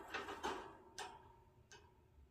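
Small pet parrot in a wire cage, its beak and feet clicking on the bars: a cluster of sharp clicks at the start, then single clicks about a second in and near the end.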